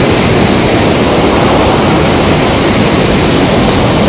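Fast mountain river rushing over rocks beneath a footbridge, a loud, steady roar of water.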